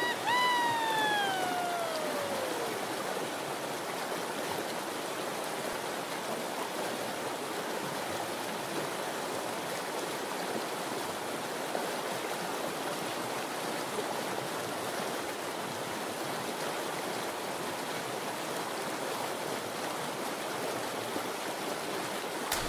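Steady rushing, splashing water, as from waterslides and a pool. In the first two seconds or so, a single whistle-like tone glides down in pitch and fades.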